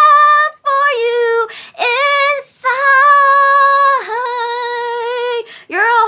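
A young person singing a love song unaccompanied in a high voice. The phrases are broken by short pauses, with two long held notes in the middle.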